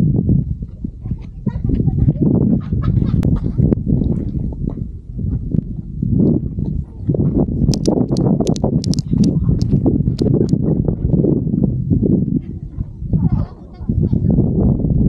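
Wind buffeting the microphone in an irregular low rumble, with a run of sharp clicks a little past halfway from footsteps on the gritty sandstone trail.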